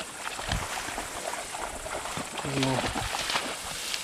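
Tall grass rustling and crackling as someone walks through it, with a short, low murmur from a man's voice a little after halfway.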